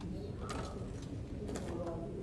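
Low, indistinct voices murmuring in a large, echoing church, with short hissy consonant sounds about half a second and a second and a half in; the words cannot be made out.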